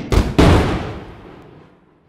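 Two deep booming hits of a logo intro sting, a fraction of a second apart, the second the loudest. They ring out and fade over about a second and a half.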